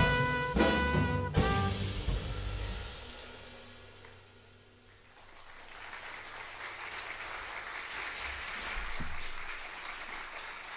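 Jazz combo of trumpet, tenor saxophone, guitar, piano, bass and drums hitting its final chords, cut off sharply about a second and a half in and ringing away. After a brief hush, audience applause builds from about halfway through.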